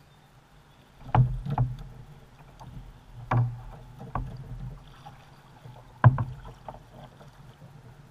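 Kayak paddle being handled and stroked, knocking against the plastic hull, with water sloshing. A handful of sharp knocks, the loudest about a second in and just after six seconds.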